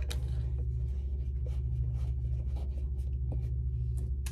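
A steady low hum with scattered light taps and clicks of small objects being handled close to the microphone.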